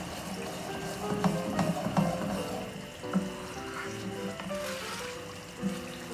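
Background music with a slow, held melody, over a wooden spoon stirring thick simmering tomato sauce in a skillet, with a few light knocks of the spoon against the pan.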